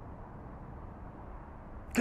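Steady, low outdoor background noise with no distinct events; a man's voice begins right at the end.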